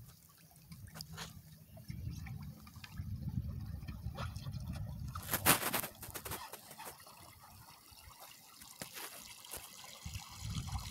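Small waves lapping and trickling with light dripping, over a low wind rumble that comes and goes. A brief louder burst comes about five and a half seconds in.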